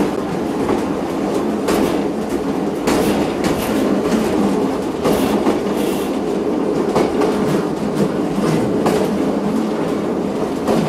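Train running along the track: a steady rumble with irregular sharp clicks of the wheels passing over rail joints and points.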